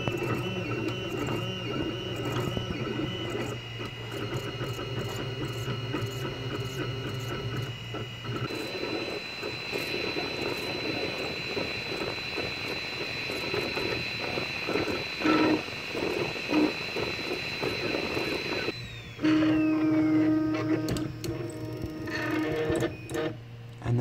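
Anet A3 3D printer running, its stepper motors whining in steady tones that jump in pitch as the print head moves through the last layers. A little after halfway the high whine falls away, and a lower steady hum follows as the head moves off the finished print.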